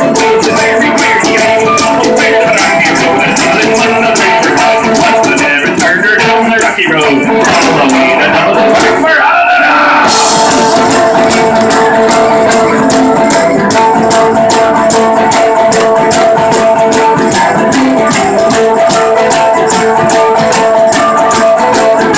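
Irish folk band playing live: fiddle and a strummed plucked string instrument over drums and rattling hand percussion, with steady held notes and a driving beat. The playing thins out briefly about nine seconds in, then comes back in full and bright.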